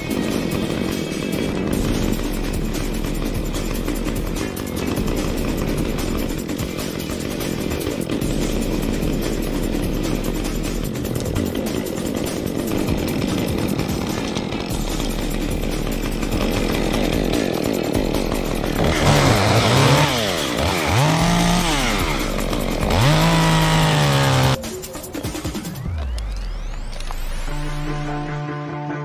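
Two-stroke top-handle chainsaw running, with music playing along. About two-thirds of the way through, its pitch rises and falls several times as it is revved, then it settles back down near the end.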